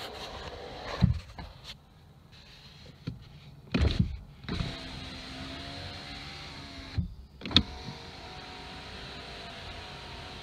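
Electric power-window motor of a 2013 Ford Mustang driving the door glass while its one-touch function is reset, running with a steady hum in several stretches. The runs are broken by sharp clicks and thumps, about a second in, near four seconds and twice around seven seconds, with a quieter pause around two to three seconds in.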